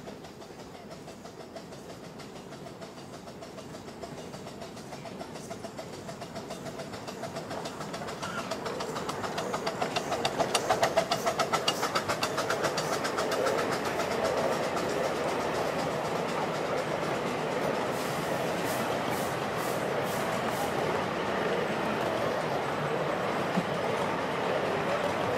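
Miniature steam locomotive approaching and passing at the head of a passenger train, its rapid exhaust beats growing louder to a peak about ten to twelve seconds in. The carriages then run past with a steady rolling noise on the track and a short run of wheel clicks near the end.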